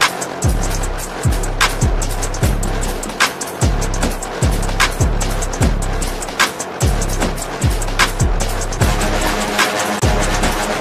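Instrumental electronic beat played live on a keyboard synthesizer. Deep bass kicks drop sharply in pitch, with crisp snare-like hits between them in a steady loop.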